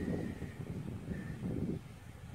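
Outdoor wind buffeting the microphone, a low uneven rumble.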